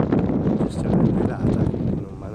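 Wind buffeting the camera microphone in gusts, a loud irregular low rumble.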